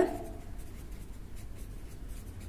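Pen writing on paper: a run of faint, irregular scratchy strokes as a word is written.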